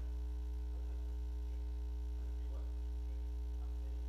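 Steady electrical mains hum: a low, unchanging drone with a ladder of higher overtones.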